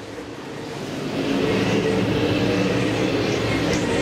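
Dirt super late model race cars' V8 engines running at racing speed, growing louder over the first second or so as the cars come closer, then holding steady and loud.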